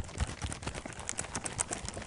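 Hardcover picture book being shaken back and forth, its pages and cover flapping in a fast, uneven run of soft clicks.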